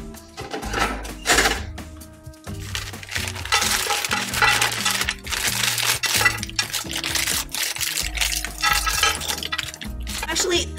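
Frozen seafood paella (rice grains, calamari rings, peas and pepper pieces) poured from a plastic bag into a nonstick frying pan, the pieces clattering onto the pan surface, thickest from a few seconds in. Background music with a steady bass line plays over it.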